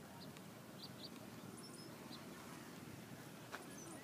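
Faint outdoor background with small birds giving short, scattered high chirps over a low steady hum, and a single sharp click about three and a half seconds in.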